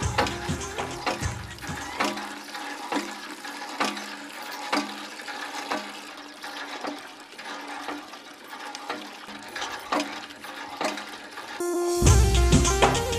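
Water from a hand pump pouring into a plastic bucket, under background music whose bass drops out about two seconds in.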